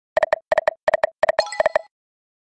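Video slot game sound effects as its five reels stop in turn: five quick electronic double beeps about a third of a second apart, the last two topped by a brief sparkling chime.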